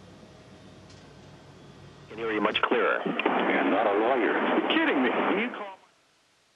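A steady low background hum, then about two seconds in a voice comes over a narrow-band radio link, thin and phone-like, for about three and a half seconds before the audio cuts off abruptly.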